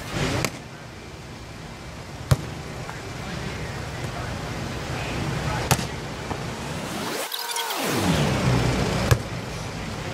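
A volleyball struck with the hands three times, sharp slaps about three and a half seconds apart, during a beach volleyball passing drill. In the second half a passing vehicle's rushing noise swells and fades, sweeping in pitch.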